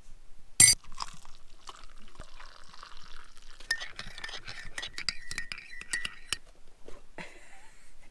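Metal teaspoon stirring coffee in ceramic mugs, clinking quickly and repeatedly against the sides with a ringing note for a few seconds around the middle. A single sharp clink comes under a second in.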